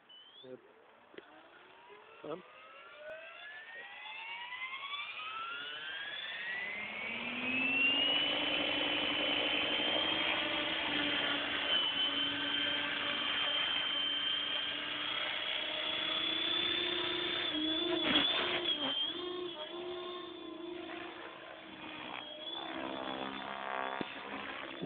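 Electric Compass 6HV RC helicopter spooling up: a whine climbs steadily in pitch over about eight seconds, then holds at head speed over the steady drone of the rotor blades. From about eighteen seconds in, the pitch dips and wavers with changing load as it lifts off and starts flying.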